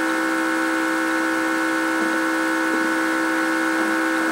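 Field audio recording with a loud steady buzzing hum of several pitches over hiss, and a few faint soft thumps, about two seconds in and near the end, put forward as footsteps in a hallway.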